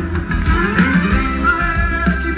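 Live band music played loud through a concert sound system: a wavering plucked-string lead melody over bass and drums.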